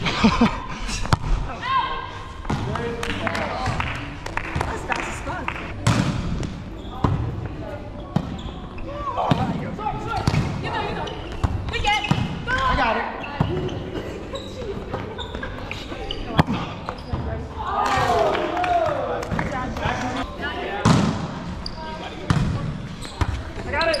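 A volleyball rally in a large gym: sharp knocks of the ball being struck and landing on the hardwood court, coming irregularly throughout, with players' shouts and calls in between.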